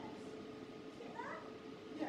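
A performer's voice: one short, high vocal sound that slides up and down about a second in, with quiet stage room tone around it.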